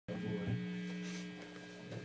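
Steady electrical mains hum from an instrument amplifier switched on but not being played: a low buzz made of several steady tones.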